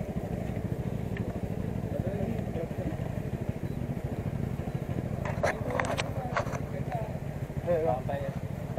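A small motorcycle engine idling steadily, with people talking around it.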